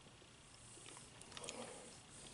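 Faint close-up chewing of a mouthful of food, soft and wet, with a few small mouth clicks around the middle.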